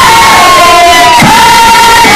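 A group of student performers singing and calling out together, with one high voice holding long notes above the rest.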